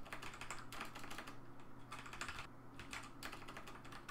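Typing on a computer keyboard: a quick, steady run of keystroke clicks, with a low steady hum underneath.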